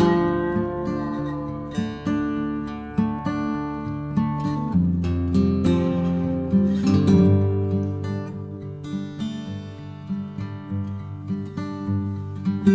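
Background music: an acoustic guitar playing plucked and strummed notes.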